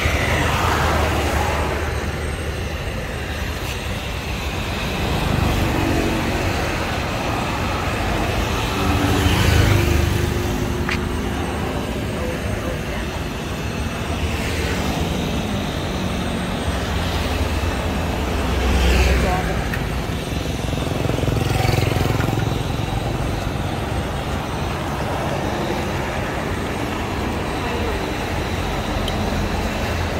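Road traffic going by: a steady low rumble of vehicles, swelling as several pass, loudest about a third of the way in and again about two-thirds in.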